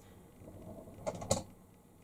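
A few short, soft clicks a little over a second in, with quiet room tone around them.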